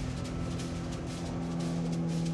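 A jet boat's outboard motor running at speed over the water, under background music with long held notes.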